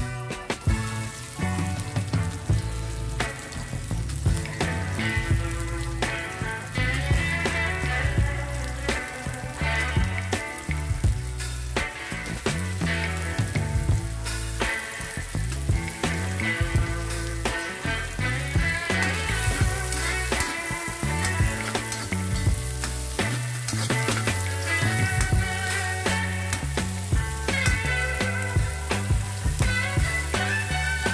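Garlic, onion and bell pepper frying in oil in a metal wok, sizzling steadily with occasional scrapes and clicks of stirring. Background music with a repeating bass line plays over it.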